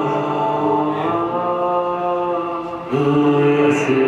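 Live ambient drone music: layered held tones that change chord about a second in and again just before three seconds in, louder after the second change.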